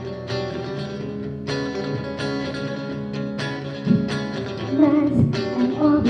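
Guitar playing the intro of a rock song live, chords struck every second or so and left to ring. A woman's singing voice comes in near the end.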